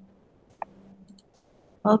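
A few faint computer mouse clicks about half a second to a second in, with low background hum, followed by a woman starting to speak at the very end.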